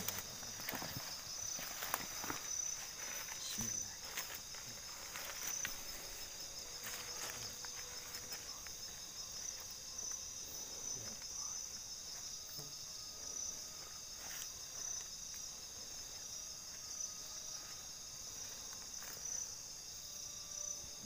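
A steady, high-pitched chorus of night insects with a faint pulsing in it. Scattered soft rustles and clicks of movement come on top, mostly in the first few seconds.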